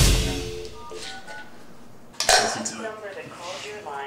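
Phone keypad touch tones as a number is dialled, a quick run of short beeps. About two seconds in, a sudden loud noise, followed by a voice.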